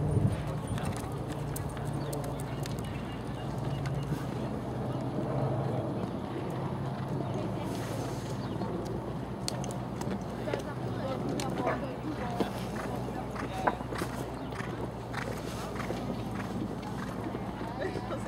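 Indistinct voices over a steady low hum, with the hoofbeats of a horse cantering on a sand arena and a couple of sharp knocks past the middle.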